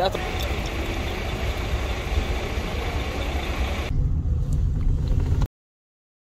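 Diesel engine of a touring coach idling steadily, with voices in the background; the low rumble grows stronger about four seconds in, then the sound cuts off abruptly.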